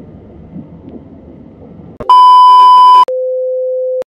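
Low, noisy room sound with a few faint knocks, then about halfway a very loud, distorted high electronic beep lasting about a second, followed by a quieter, lower steady tone for about a second that cuts off abruptly into silence.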